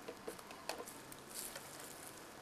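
Faint rustling and light crackling of dry fallen leaves underfoot as someone walks, with a few scattered small clicks.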